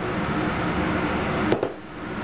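A glass measuring cup set down on the countertop with a single sharp knock about one and a half seconds in, over a steady background hum.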